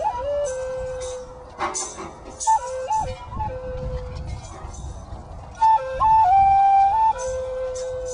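Music: a flute playing a slow melody of long held notes with short stepping runs between them, over light shaken percussion.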